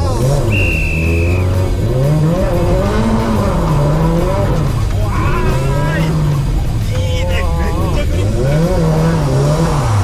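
Sports car engine heard from inside the cabin, revving up and falling back several times as the car accelerates and shifts gears on a circuit. A brief high-pitched whine sounds for about a second near the start.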